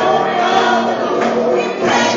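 A woman singing a gospel song into a microphone, with music behind her voice.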